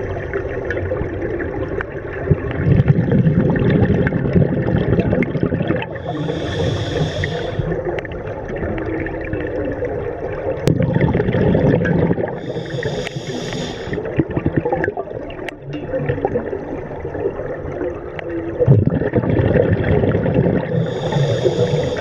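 Scuba regulator breathing underwater: a short hiss on each inhalation, three times about six to seven seconds apart, alternating with a low rumble of exhaled bubbles.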